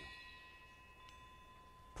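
Near silence: faint room tone with a few thin, steady high-pitched tones and a low hum.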